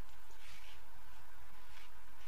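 A steady low hum under an even hiss, with two faint, brief soft sounds: one about half a second in and one near the end.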